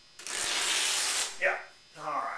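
Canvas cloth being torn by hand: one continuous rip lasting about a second.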